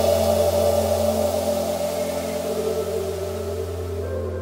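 Background electronic music: a steady held low chord, slowly fading, after a dubstep passage breaks off.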